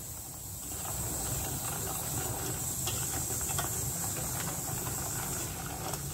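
A spoon stirring thick chocolate glaze in a stainless-steel saucepan on the stove as it heats toward the boil: a soft, steady hiss-like stirring with a few faint ticks of the spoon against the pan.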